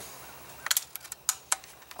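A run of light, irregular clicks as a Crosman 760 Pumpmaster multi-pump air rifle is handled, starting a little under a second in.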